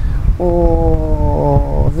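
A man's voice holding one long, steady "o" vowel for about a second and a half as a hesitation before the next word, over a low background rumble.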